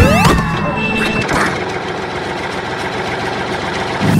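Tractor engine sound effect running with a steady rough low rumble. A short rising glide opens it, and a high steady tone sounds through the first second.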